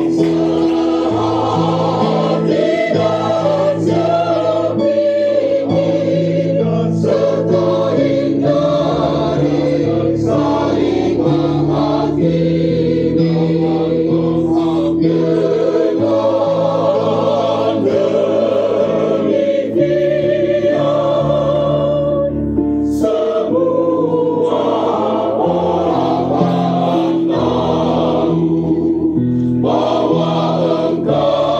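Mixed choir of men's and women's voices singing a hymn in parts, with sustained notes, accompanied on an electronic keyboard.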